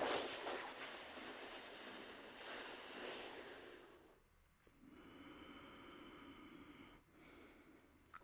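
A man doing Sitali (cooling) breath: a long hissing inhale through the curled tongue for about four seconds, then, after a short pause, a quieter breath out.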